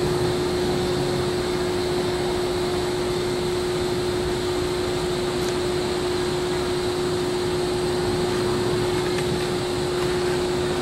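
A steady mechanical hum holding one constant tone, over an even hiss of background noise that does not change.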